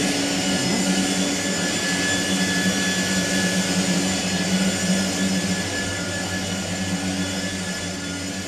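Steady hum and whir of soy-products factory machinery, a low drone with a thin high whine over a hiss, slowly getting quieter toward the end.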